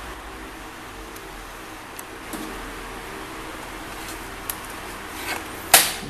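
Low steady room hum with a few faint plastic ticks, then one sharp snap near the end as the laptop keyboard's plastic retaining clip pops free of the palm-rest frame.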